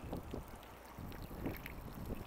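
Faint water trickling from a grey-water outlet into a flooded tree basin as washing-machine drain water fills it, under a low rumble of wind on the microphone.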